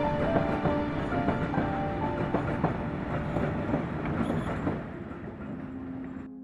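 Train running along the rails, its wheels clattering irregularly over the track, fading out about five seconds in, with music underneath.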